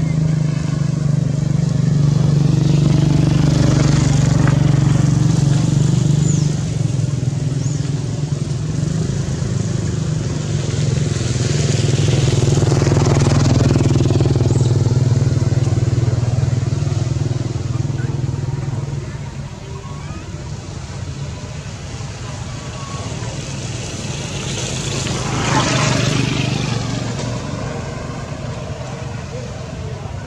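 A steady, low engine drone, like a motor vehicle running nearby, that fades away about two-thirds of the way through, with faint voices behind it.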